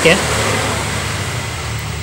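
A steady, low mechanical hum with a haze of noise over it.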